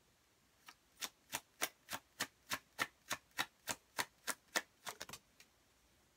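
A deck of tarot cards being shuffled by hand, overhand: a regular run of soft card slaps, about three a second, that starts under a second in and stops after about five seconds.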